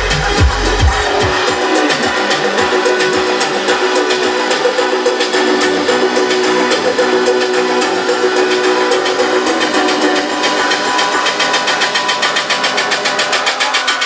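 A DJ set of electronic dance music played loud over a club sound system. The bass drum and low end drop out about a second and a half in, leaving held synth tones and fast, even hi-hat ticks.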